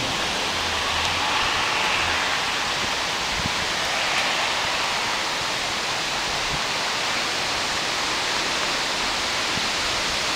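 Steady rushing noise of water, even throughout.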